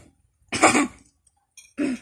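A child coughing twice, two short harsh coughs: one about half a second in and another near the end.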